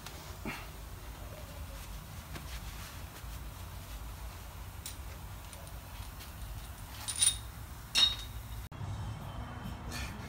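Metal hardware and hand tools knocking on the steel frame and suspension of a Jeep, mostly faint taps, then two sharp clinks with a brief metallic ring about seven and eight seconds in.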